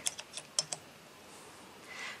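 About five light clicks in the first second as a small metal coil spring is handled and hooked onto the landing-gear leg of a DJI S1000 frame.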